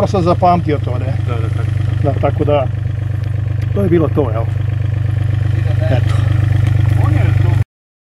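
A mini excavator's diesel engine running steadily at a low hum that grows a little louder and pulses slightly near the end, then stops abruptly.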